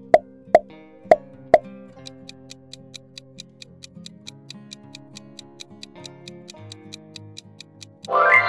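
Four quick pop sound effects as the quiz answer options appear, then a countdown timer ticking about four times a second, over light background music.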